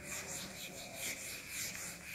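Whiteboard eraser rubbing across a whiteboard in quick back-and-forth strokes, about four a second, wiping off marker writing.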